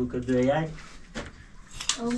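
A man's voice briefly, then bricklaying sounds on the fireplace: a single sharp knock followed by a short, high scrape of brick and mortar being worked into place.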